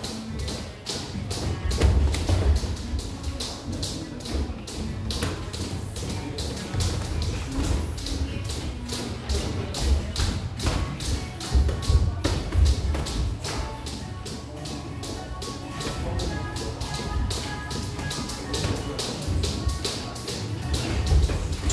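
Boxing sparring in a ring: many quick taps and slaps of gloves and footwork, several a second, with heavier thuds here and there, over background music.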